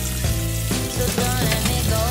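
Tap water running and splashing into an aluminium saucepan of sauce as a spoon stirs it, a steady hiss, with background music over it.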